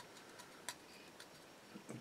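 Near silence with a few faint, short clicks from the plastic model ship hull being handled and turned in the hands.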